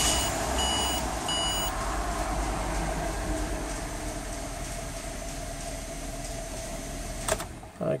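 A 2007 Ford Territory's 4.0-litre inline-six idling just after a start, settling gradually quieter, with two short electronic chimes from the dash about a second in; it is switched off about seven seconds in. It is a brief run to draw fresh fluid into the ZF 6HP26 automatic transmission during refilling.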